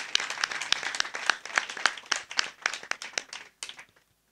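Audience clapping, a short round of applause that thins to a few scattered claps and stops near the end.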